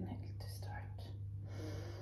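A woman drawing a slow, deep breath in, a soft airy sound, over a steady low hum.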